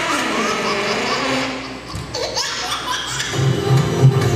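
Playback of a stage performance soundtrack in a large hall: a voice sliding up and down in pitch, then new music with a steady low beat starts about three seconds in.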